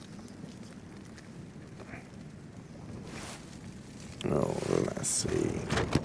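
Rain pattering steadily on a Cuben fibre tarp shelter. About four seconds in, a louder stretch of low voice comes in.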